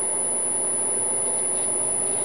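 WVO Designs Raw Power oil centrifuge, lid off, its electric motor spinning the internal rotor at about 2,500 RPM under a variable-speed controller: a steady mechanical hum and whine made of several even tones.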